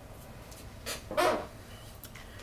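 A single short, bark-like yelp about a second in, just after a fainter brief sound.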